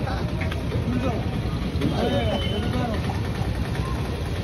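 A vehicle engine idling with a steady low rumble, and people's voices talking over it about half a second in and again around two seconds in.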